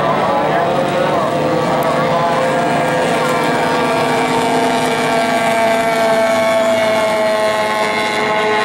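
Several J-class racing hydroplanes' small two-stroke outboard engines running at racing speed together, a steady high buzz whose pitches drift slowly down as the boats pass.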